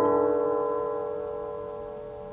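The final stroke on a struck percussion instrument ringing out, several steady tones fading slowly away.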